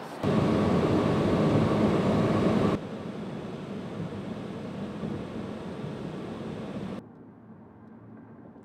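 Loud wind rushing on the microphone for a few seconds, cut off abruptly. Steady road noise from a car driving on a highway follows, and it drops to a lower level near the end.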